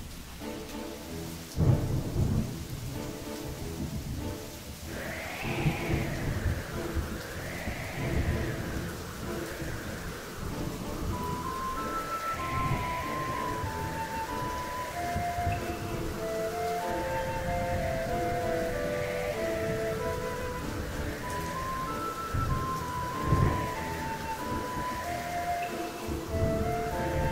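Slow background music of held melody notes laid over storm sound effects: steady rain, rumbles of thunder (loudest about two seconds in and again near the end), and a swell of noise that rises and falls every two seconds or so.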